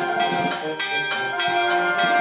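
A wind band with percussion playing a slow religious march (marcia religiosa) on the move, with held, ringing chords and a low drum stroke about one and a half seconds in.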